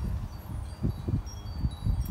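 Outdoor wind chime ringing faintly with thin high tones, over a low uneven rumble.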